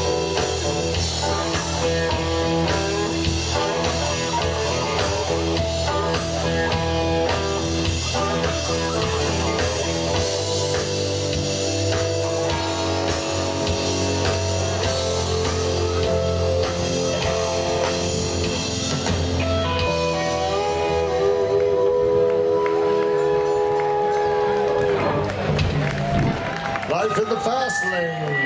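Live rock band playing electric guitar, drums and a steady bass line. In the last few seconds long held, wavering notes take over, and the music stops just before the end.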